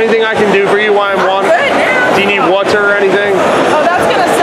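A woman's voice talking loudly and high-pitched, with some syllables drawn out.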